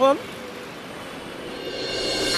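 Steady roadside traffic noise with no clear engine note, swelling slightly near the end, after a short spoken word at the start.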